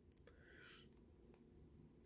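Near silence: room tone with a couple of very faint clicks.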